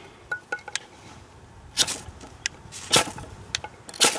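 Strike Force ferrocerium fire-starting rod scraped with its striker, throwing sparks: two short scrapes about a second apart, then a louder one right at the end. Small metal clicks come between the strokes as the tool is handled.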